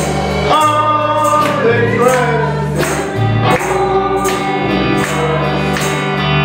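Gospel song: singing over held bass notes and chords, with sharp percussive beats.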